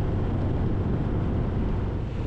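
Harley-Davidson Sport Glide's V-twin engine running steadily while riding, with a constant rush of wind and road noise.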